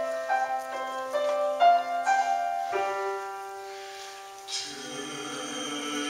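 Piano playing an instrumental interlude of gently repeated notes, settling on a held chord about three seconds in that slowly fades. Near the end, voices come in singing over it.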